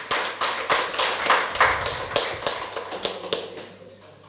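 Audience clapping: a run of separate claps that fades out after about three seconds.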